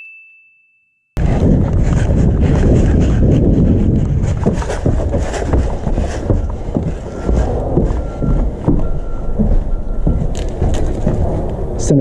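A bell-like 'ding' sound effect fades away over the first second. After a moment of silence, close-up noise from a head-mounted camera on someone moving through a wooden building follows: many short knocks and footfalls on a plank floor over a steady low rumble.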